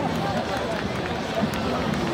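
Football stadium crowd: many spectators talking at once, a steady babble of voices with no single speaker standing out.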